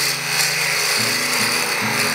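A tool cutting a spinning wooden handle blank on a woodturning lathe, a steady hiss of shavings coming off as the tenon is sized down to 20 mm. Background music with steady chords plays under it.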